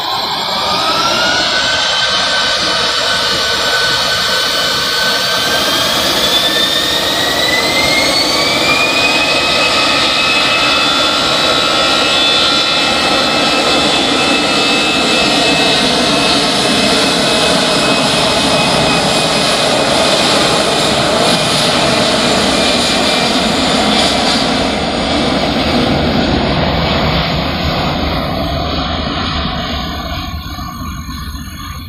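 Jet engines of a Citilink Airbus A320 spooling up to takeoff thrust. A whine rises in pitch over the first several seconds, then holds steady over a loud, dense rushing noise as the airliner rolls down the runway. The sound falls away near the end.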